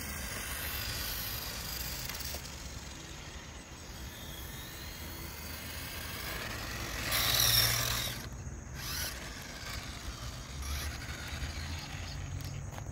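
Tyco 1/8-scale RC go-kart driving, its small electric motor and gears whirring with a faint whine that rises and falls as it speeds up and slows. A louder rush of noise comes about seven seconds in.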